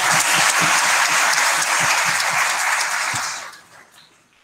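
Audience applause from a hall, steady and then dying away about three and a half seconds in.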